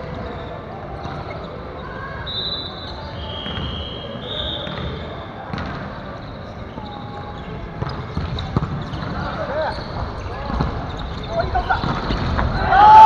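Busy volleyball-gym hubbub: players' voices echoing around a large hall, with a few short, high sneaker squeaks on the wooden floor and several sharp knocks of a ball, growing livelier toward the end as play starts.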